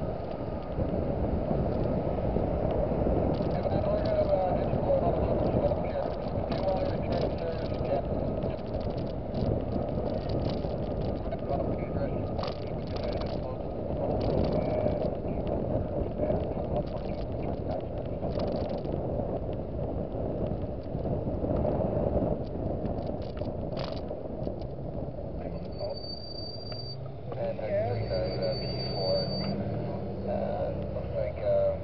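Steady road and tyre noise heard from inside a moving car on wet pavement, with faint, indistinct voices underneath.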